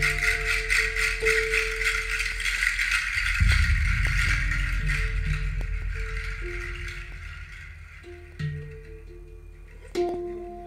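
Recorded music played over large floor-standing loudspeakers in a small room: a rattle shaking steadily over low bass and a few held mid-pitched notes, the rattle fading away over the last few seconds.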